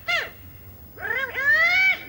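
Petrushka puppet's squawky, very high-pitched swazzle (pishchik) voice shouting drill commands: a short cry at the start, then two calls from about a second in, the second long, slightly rising and held.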